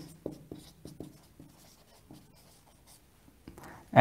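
Felt-tip marker writing on a whiteboard: a few short, faint strokes, mostly in the first second and a half, then a brief stroke near the end.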